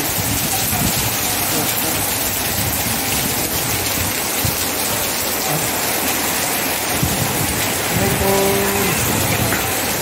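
Steady rain falling, an even hiss. A voice is heard briefly near the end.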